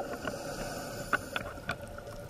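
Underwater ambience picked up by a diving camera: a steady low hum and hiss with a few faint clicks about a second in.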